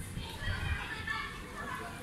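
Children's voices: high-pitched shouting and chatter, with several voices overlapping.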